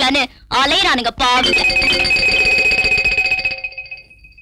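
A held chord of film background music comes in about a second and a half in, after a short spoken line, and fades out near the end.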